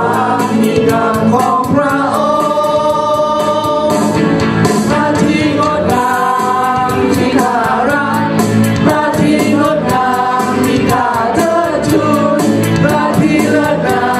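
Voices singing a Christian worship song in Thai over instrumental accompaniment with a steady beat.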